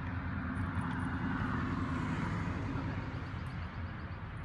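Rumble of a road vehicle going by, swelling over the first couple of seconds and easing off near the end.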